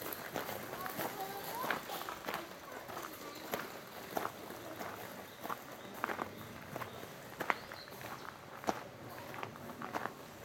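Footsteps crunching on a gravel path at a steady walking pace, a little under two steps a second. Faint voices can be heard in the first couple of seconds.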